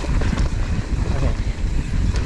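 Mountain bike running fast down a dirt trail: heavy wind rushing over the microphone, tyres rumbling on the ground, and the bike rattling in quick irregular clicks and knocks over the rough surface.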